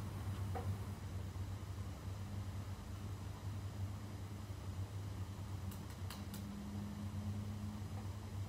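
Quiet room tone with a steady low hum, and a few faint clicks from a laptop being used, a small cluster of them about six seconds in.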